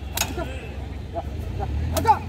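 Men's short shouts and calls urging an Ongole bull off a truck, with two sharp cracks, one just after the start and one at the end, over a steady low rumble.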